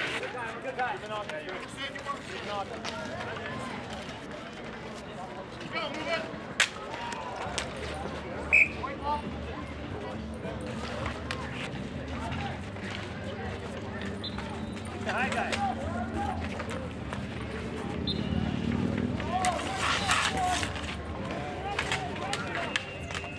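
Indistinct chatter of players and onlookers at an outdoor ball hockey game, with sharp clacks of hockey sticks and ball on asphalt. The two loudest clacks come about six and a half and eight and a half seconds in.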